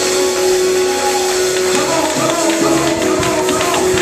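Live gospel praise music: a held chord under drums and percussion, with the congregation clapping along in rhythm.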